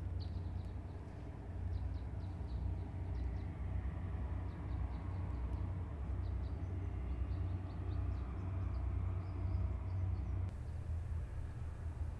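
Outdoor background sound: a steady low rumble with many short, high bird chirps scattered throughout.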